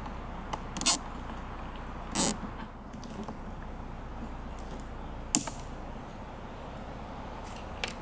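Nylon zip tie being ratcheted tight around rubber fuel hoses: two short zips in the first couple of seconds, then one sharp click a little after five seconds in, over a faint steady background.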